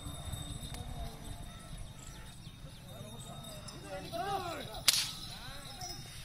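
A bullock driver's lash cracking once, sharp and loud, about five seconds in. Brief arching shouted calls come just before it, all over a steady low rumble of the bull team working on the dirt track.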